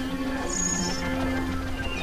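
Experimental electronic drone music from synthesizers: several steady tones layered over a low hum, with a brief high tone coming in about half a second in.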